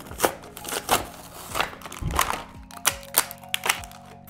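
Cardboard and clear plastic blister packaging of a toy multipack being torn open and crinkled by hand: a series of irregular sharp rips and crackles.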